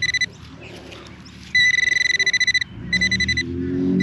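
Handheld Nokta pinpointer probe sounding its electronic alert tone as it is pushed into the dug soil: a short beep, then a longer rapidly pulsing buzz about a second and a half in, and another brief pulsing burst just after. The tone signals metal close to the probe's tip.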